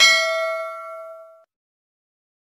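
A single bell-like chime, struck once and ringing with several bright overtones, fading away within about a second and a half.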